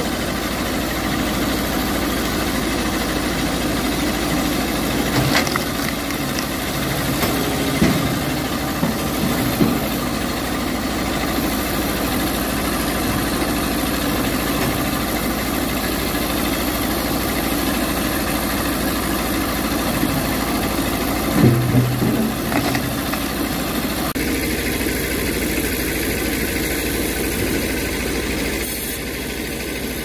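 An old tractor's engine running steadily as it drives a band sawmill, with a few short knocks from logs being handled.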